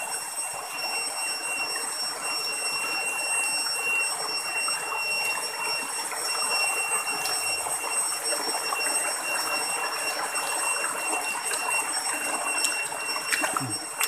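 Shallow rocky stream running and splashing over stones, a steady noise of moving water, with a thin steady high-pitched whine over it.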